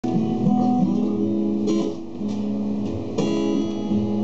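Acoustic guitar played live, picked notes ringing out with a couple of strummed chords in the second half.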